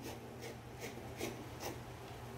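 Faint rustling and a few soft snips, about half a second apart, as scissors trim the excess quilt batting from the edge of a quilted cotton piece and the offcut is pulled away.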